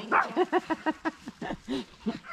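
Chihuahua puppies yapping while play-fighting: a quick string of about eight short, high barks.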